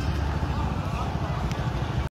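Low, steady rumble of a heavy truck's diesel engine running, with faint voices in the background.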